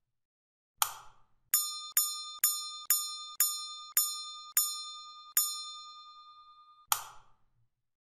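A run of eight bright bell-like dings, about half a second apart, each ringing and fading into the next; the last rings on for over a second. A sharp click comes before the run and another just after it.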